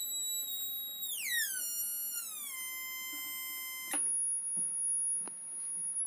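Electronic test tone with overtones from a signal generator being swept, stepping down in pitch over the first two or three seconds and then holding. About four seconds in, a click, and the tone switches to a steady, very high whine.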